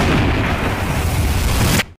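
Explosion sound effect: a loud, drawn-out blast heavy in the low end, which cuts off suddenly near the end.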